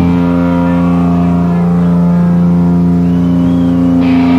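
Distorted electric guitar and bass in a live sludge-metal band holding one loud chord and letting it ring as a steady drone, with no drums.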